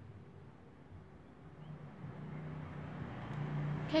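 Low, steady rumble of a vehicle engine, growing louder over the last two seconds.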